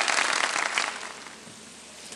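Studio audience applause fading out over the first second or so, leaving a faint steady hiss.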